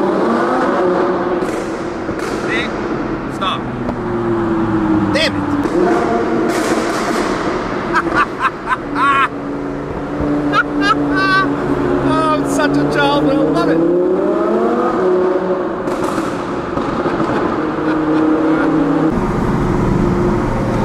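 Audi R8 V10 Plus's naturally aspirated 5.2-litre V10 engine revving hard from inside the cabin during a tunnel run. Its pitch climbs at the start, holds, and climbs again before falling off near the three-quarter mark. A cluster of sharp cracks comes around the middle.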